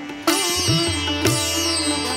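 Background music on a plucked string instrument, with sharp note attacks and sliding notes over a low steady drone.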